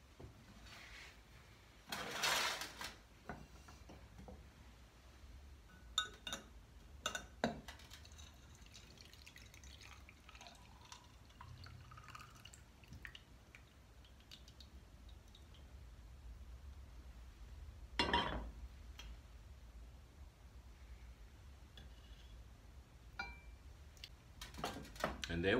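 Herbal tea being poured from a glass saucepan through a small metal strainer into a mug: a faint trickle of liquid with clinks and knocks of glass and metal cookware. There is a louder clatter a couple of seconds in, a few sharp clicks, and a knock about three-quarters of the way through as cookware is set down.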